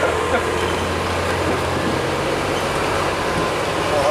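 Bus under way, heard from inside the passenger saloon: its engine gives a steady low drone under continuous road noise.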